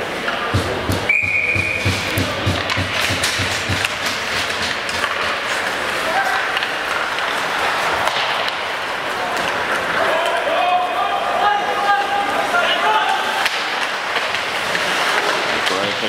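Ice hockey rink during play: voices of players and spectators echoing in the arena, with sticks and puck knocking and banging against the boards. A short high steady tone sounds about a second in.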